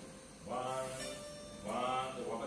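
Casio electronic keyboard playing two held, steady notes, the first starting about half a second in and the next near the end.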